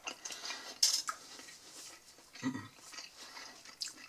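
Close-up chewing of a crisp potato pancake, with a single sharp click of a metal fork about a second in and a faint second click near the end.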